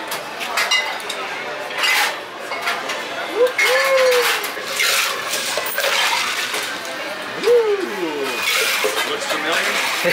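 Bar tools and ice clinking while a cocktail is mixed: a steel jigger and cocktail shaker knocking, and the shaker's contents poured over ice into plastic cups, with scattered sharp clinks.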